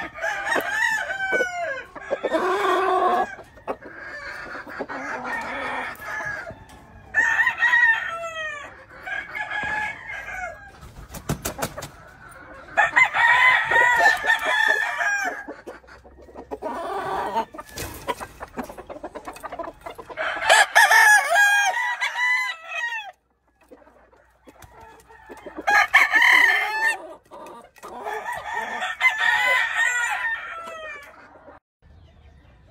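Several roosters crowing again and again, the crows often overlapping, with clucking between them. There is a short lull about three-quarters of the way through.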